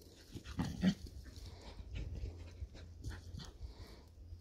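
Puppies at play, with a short low puppy vocalisation just before one second in, followed by scattered rustles and scuffles of paws in the forest litter.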